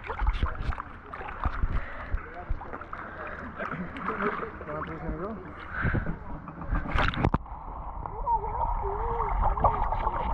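Pool water sloshing around a camera at the surface, then a splash about seven seconds in as a child jumps off the diving board into the pool. After the splash the sound turns muffled as the camera goes underwater.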